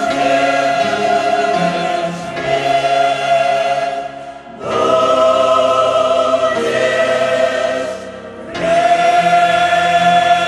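Mixed choir singing a Russian-language hymn in long held chords, with two brief breaks between phrases, about four and about eight seconds in.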